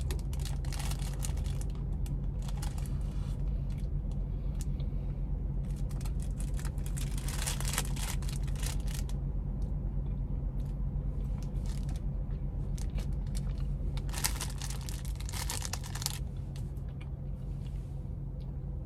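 Crinkling of a snack cake's clear plastic wrapper in handling and eating, coming in irregular bursts with the loudest spells near the middle and about two-thirds through, over a steady low hum from the idling car.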